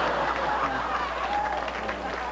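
Studio audience applauding after a joke. The applause slowly dies down.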